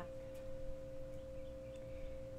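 A steady, unchanging hum of two pure tones, one higher and one lower, over a faint low rumble.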